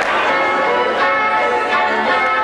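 Bells ringing in a peal, with fresh strikes at the start and about a second in, from a film soundtrack played over a large theatre's sound system.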